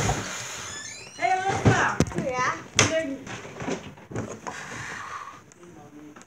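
A child's voice making wordless, playful vocal sounds, with a couple of sharp knocks partway through.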